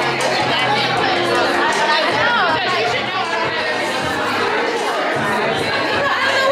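Many women chatting at once, voices overlapping into a steady hubbub in a large room, with music playing underneath.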